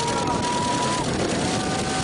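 Steady rush of wind and sea noise over the microphone, with onlookers' long held yells over it: one for about the first second, another starting near the end.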